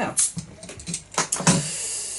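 Crown cap prised off a glass beer bottle: a sharp pop a little past a second in, followed by a steady hiss of carbonation escaping from the neck.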